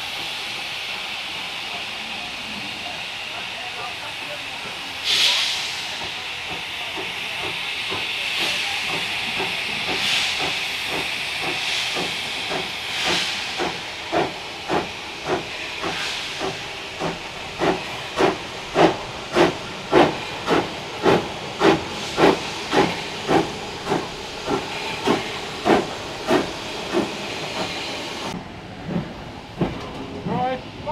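Steam locomotive 78018, a BR Standard Class 2MT, hissing steam as it draws in, with a loud burst of steam about five seconds in. A regular beat builds to about two a second in the second half. The hiss cuts off suddenly near the end.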